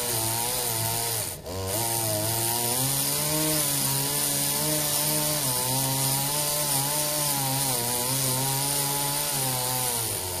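Gas chainsaw running under load as it cuts into a tree stump. The engine pitch wavers up and down, dips briefly about a second and a half in, then picks up again.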